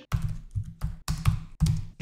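Computer keyboard being typed on: a handful of separate keystrokes.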